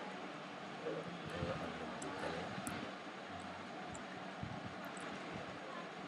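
Steady background room noise with faint, indistinct voices and a few light clicks.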